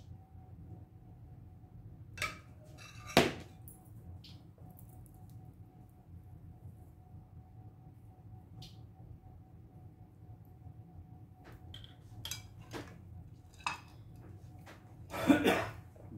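Scattered light clinks and taps of a metal spoon against a glass dessert dish and pans, the sharpest about three seconds in and a small cluster a couple of seconds before the end, over a faint steady hum. A louder, brief sound comes just before the end.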